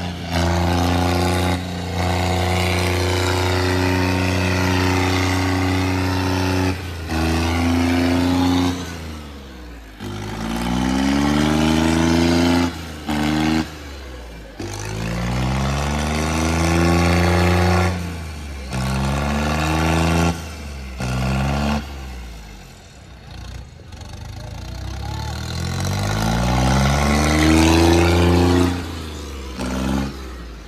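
John Deere tractor's diesel engine at high revs, working hard under load as it drives with its front wheels lifted. The note holds steady for the first several seconds, then falls and climbs again in pitch several times, with a few brief sudden dips and a quieter stretch past the twenty-second mark.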